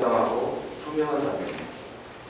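Speech only: a man speaking Korean into a microphone.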